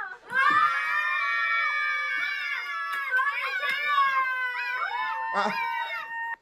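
A young woman's long, high-pitched "aaaaa" scream, held steadily at first, then wavering in pitch and breaking into shorter cries near the end.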